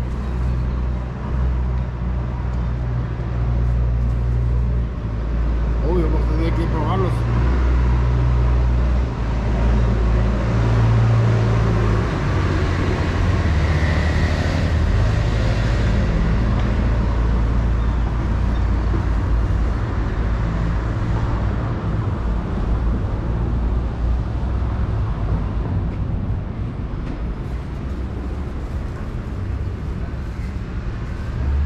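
Road traffic noise: a steady low rumble of vehicles on the street, with voices in the background.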